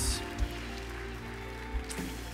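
Soft band music with held chords from an electric guitar and keyboard, under light applause.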